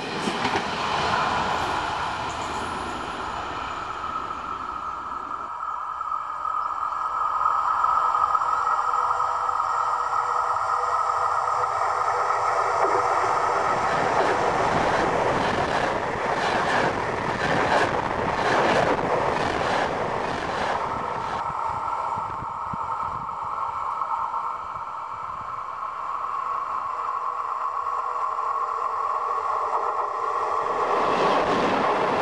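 A train running over the track, with wheels rattling over the rails. The clatter is densest and loudest about halfway through, as the cars pass directly over a camera lying between the rails.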